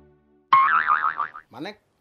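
A springy cartoon 'boing' sound effect, cut in for comic effect. It starts suddenly about half a second in and lasts about a second, its pitch wobbling quickly up and down. A short spoken word follows near the end.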